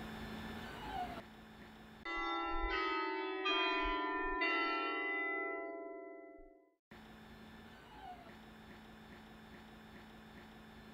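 A short chime of bells: about five strikes in quick succession, each ringing with several overtones over a low sustained tone, then fading out over a few seconds. Before and after it, faint room tone with a low steady hum.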